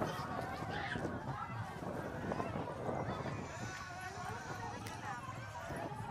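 Many people's voices overlapping as a crowd walks together, talking and calling out over one another.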